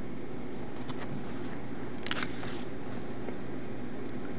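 A steady low background hum, with a brief rustle of paper from a booklet's pages being handled and turned about two seconds in.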